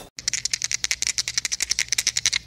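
A fast, even rattle of clicks, about fourteen a second, over a faint low hum.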